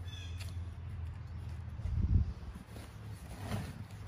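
Hands pressing and smoothing potting soil over tubers in a plastic tray: a few soft rustles over a steady low hum.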